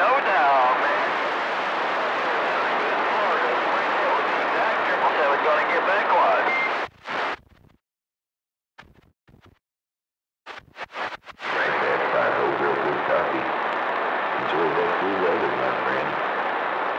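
CB radio receiver on channel 28 picking up long-distance skip: garbled, unintelligible voices buried in heavy static. About seven seconds in the squelch closes and cuts the signal off. A few short crackling bursts break through, then the noisy signal returns near twelve seconds.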